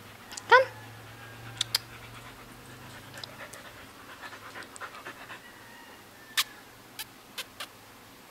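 Siberian husky giving one short, high-pitched whine about half a second in, followed by fainter dog sounds and several sharp clicks.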